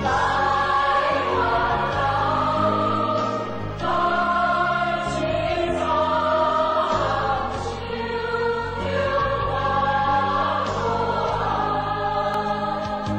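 Music with choral singing: a choir holds long notes over a steady bass line, with a short break between phrases about four seconds in.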